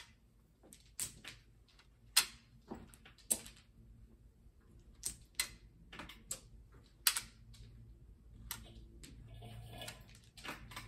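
Mahjong tiles clicking against one another as they are picked up and set into a two-layer wall against a plastic rack: irregular, sharp clicks, a couple each second.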